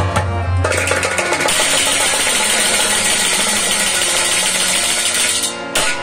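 Instrumental music: harmonium chords held under quick hand-drum strokes, with a bright hissing percussion shimmer from about a second and a half in until shortly before the end.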